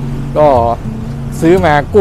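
A man speaking Thai in two short phrases over a steady low hum.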